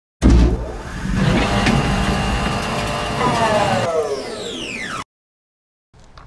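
Engine revving sound effect that starts abruptly, runs steadily, then drops in pitch over its last two seconds and cuts off suddenly about five seconds in.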